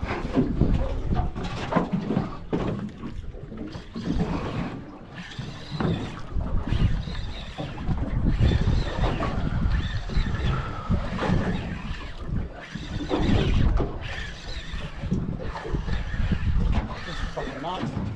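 Gusty wind buffeting the microphone, rising and falling unevenly, on an open boat at sea, with muffled voices underneath.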